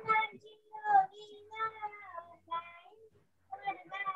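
A young girl singing on her own, in short phrases with some notes held.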